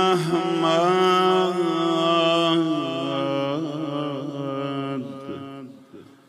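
A man's solo voice chanting a Persian rawda (mourning elegy) into a microphone. It is one long, drawn-out melismatic phrase that steps down in pitch partway through and fades away near the end.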